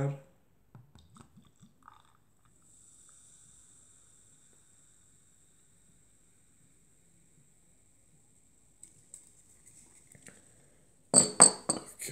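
Carbonated lemon shandy poured from a glass bottle into a drinking glass, heard as a faint fizzing hiss. Near the end come several louder sharp clinks and knocks of glass being set down.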